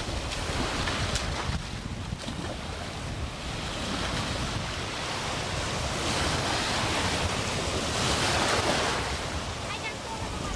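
Ocean surf washing in and breaking at the shoreline, a steady rush that swells louder about six seconds in, with wind rumbling on the camcorder microphone.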